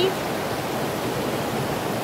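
Stream rushing over rocks in rapids: a steady, even rush of water.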